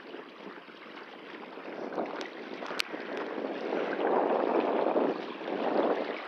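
Small lake waves lapping and splashing against shoreline rocks and a concrete boat ramp, swelling louder in the second half. A couple of sharp clicks come between two and three seconds in.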